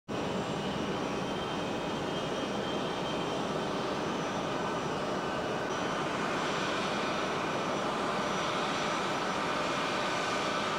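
A plane's engines running steadily as it taxis: an even rush with thin high whines over it.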